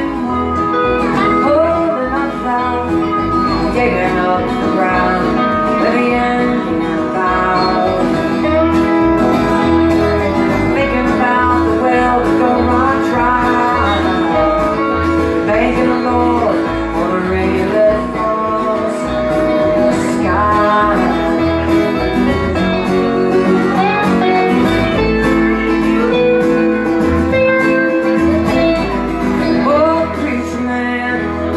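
Live country-rock band playing a song: strummed acoustic guitar, banjo, electric guitar and lap steel guitar, with a sung vocal over it.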